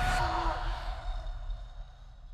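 A woman's brief breathy cry from a film trailer, dying away within about a second, over a low rumble.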